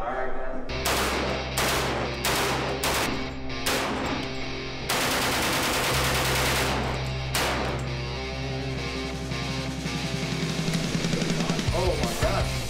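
Automatic rifle fire in an indoor shooting range: several short bursts about half a second apart, then one long burst of about two seconds, and one more short burst. Music with a steady beat plays under the shooting.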